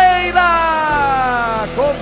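Radio goal celebration in a football broadcast: a voice holding long notes that slide slowly down in pitch, over music, breaking into shorter sung or shouted syllables near the end.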